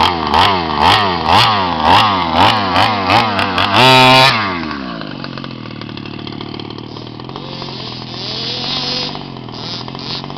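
Small two-stroke petrol engine of an HPI Baja 5B 1:5-scale RC buggy, revved in quick blips about two a second, then held at high revs for about half a second around four seconds in. The buggy then drives away, its engine quieter and rising and falling in pitch as it runs across the grass.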